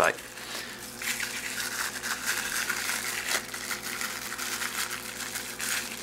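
Plastic wrapping crinkling and rustling as it is pulled off a small stainless steel bar jigger, a dense irregular crackle of fine clicks that runs on for several seconds.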